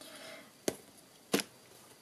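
Two short, sharp clicks about two-thirds of a second apart as hard plastic stamping supplies, a clear acrylic stamp block and an ink pad, are handled on the desk, after a faint rustle.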